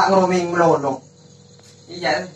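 A man's voice talking for about a second, then breaking off into a quiet pause with only a faint steady background tone.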